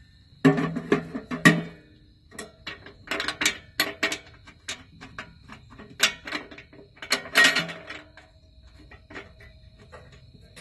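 Sheet-metal parts of a leaf blower housing clanking and rattling as a metal guard and the round intake grille are handled and fitted, with the latch clip worked by hand. The knocks come in clusters, the loudest just after the start and again about seven seconds in, some ringing briefly.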